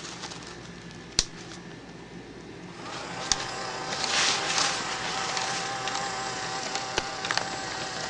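Small battery-powered gear motor in a flying ghost toy being switched on: a sharp click about a second in, then from about three seconds in a steady whine with light clicking from the gears and swinging arm. It runs continuously because the sound-activation microphone has been bypassed by twisting its two wires together.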